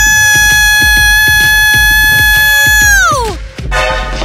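A loud, steady high-pitched tone held over a music beat; about three seconds in, its pitch slides down and it stops.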